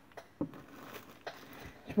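Faint handling noise of small plastic bags slipping off a table: a few separate light clicks and a soft rustle.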